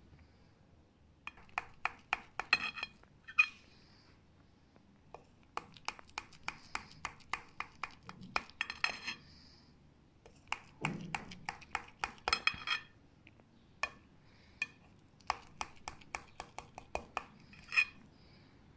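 A kitchen knife cutting through a set semolina pudding, its blade clicking against the bottom of a glass baking dish in quick runs of small clinks. There are four runs of a few seconds each, one for each cut.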